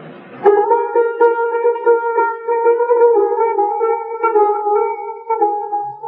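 A single melodic instrument enters about half a second in and holds one long, steady note with slight wavering, in a muffled old tape recording of Persian classical music in Dashti.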